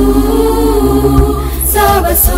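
A school choir singing, the voices holding a long sustained chord before moving into the next phrase near the end.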